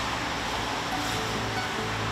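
Soft background music with a few faint held notes over a steady hiss of outdoor street noise.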